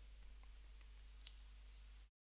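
Near silence with a faint steady low hum, broken a little past a second in by a soft, quick double click of a computer mouse.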